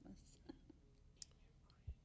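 Near silence: room tone with soft, breathy laughter from the speaker at the dais, a faint click a little past a second in and a low thump near the end.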